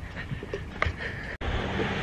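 Outdoor street noise with wind on the microphone of a handheld camera. It drops out suddenly about one and a half seconds in, then carries on as a steadier low rumble.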